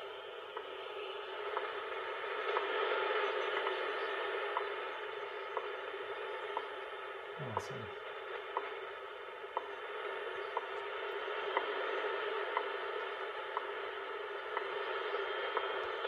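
Shortwave radio reception of the WWV time-signal station: a steady hiss of static, narrow like a radio speaker, with a short tick every second marking the seconds.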